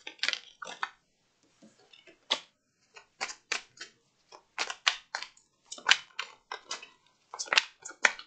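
Deck of tarot cards being shuffled by hand: a run of quick, irregular snaps and flicks as the cards slap and slide against one another.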